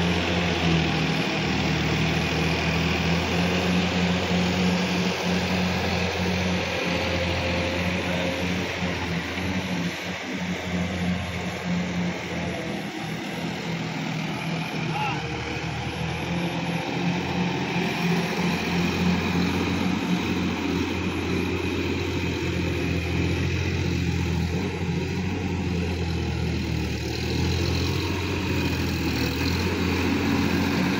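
Sonalika DI 50 RX tractor's diesel engine running steadily under load, pulling a rotary implement through wet paddy-field mud; a slight drop in level about a third of the way in.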